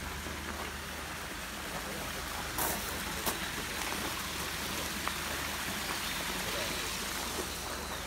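Steady splashing hiss of water from a pond fountain, with a few light clicks about two and a half, three and five seconds in.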